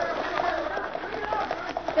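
Faint background voices over a steady recording hiss, with no clear lead line of dialogue.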